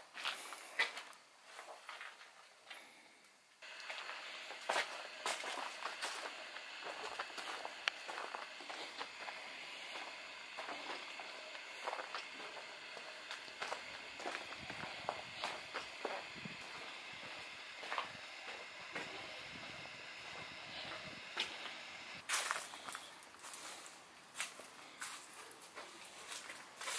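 Footsteps of a person walking along a dirt trail, with a steady high hiss in the background from about four seconds in.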